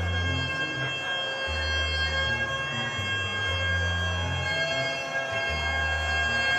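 Live Afrobeat band music: long held high notes over a bass line that moves in steps, with a saxophone line wavering in near the end.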